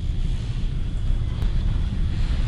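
A low, steady rumble of background room noise, with a faint thin high tone above it.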